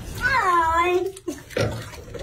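A wet cat being bathed in a tub gives one long, drawn-out meow lasting nearly a second, followed by a shorter, lower sound.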